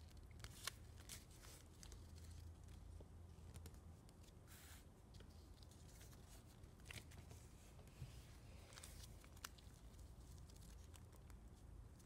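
Faint rustling and scattered soft ticks of origami paper being folded and creased by hand, over a low room hum.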